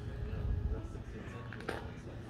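Indistinct voices in the background, with a low rumble on the microphone that swells about half a second in, and a single sharp click near the end.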